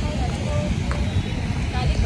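Faint voices of a group talking nearby over a steady, gusty low rumble from wind on the microphone.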